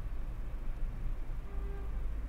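A steady low background hum, with a brief faint tone about one and a half seconds in.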